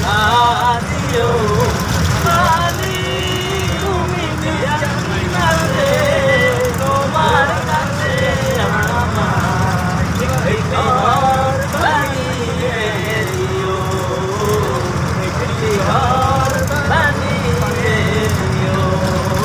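Steady low rumble of a bus engine and road noise inside the passenger cabin, with people's voices over it throughout.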